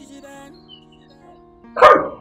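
Background music with steady held notes, then a single sudden, very loud shout of "Hey!" near the end.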